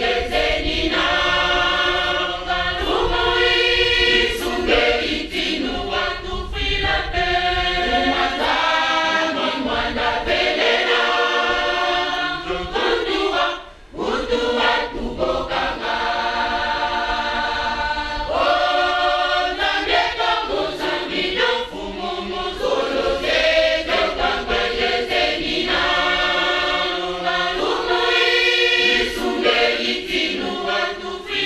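Kimbanguist church choir singing in chorus, many voices together, with a brief break between phrases about halfway through.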